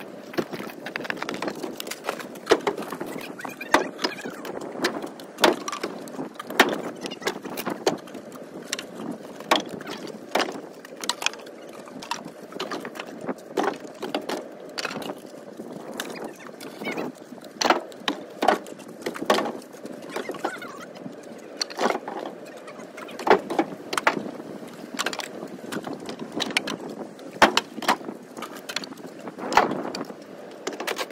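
Split firewood being tossed by hand into a pickup truck bed: irregular knocks and clatters of wood pieces landing on the bed and on each other, several a second at times and then pausing.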